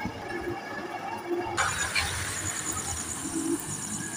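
Night-time outdoor ambience: a steady, high-pitched chirring of crickets starts abruptly about a second and a half in, over a faint low rumble, after a stretch of quiet indoor room sound.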